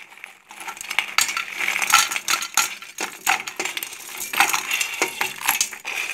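Chunks of crushed sugar loaf tumbling into an empty stainless steel pot: a stream of irregular sharp clinks and clatters with a short metallic ring, starting about half a second in.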